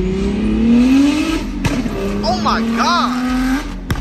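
A car engine accelerating hard, its pitch rising steadily for over a second, breaking briefly as it shifts, then holding a steady note. People whoop over it in the middle, and a sharp click comes just before the end.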